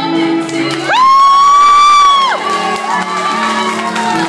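A woman singing live into a microphone over a backing track, holding one high note for about a second and a half, rising into it and falling off at the end.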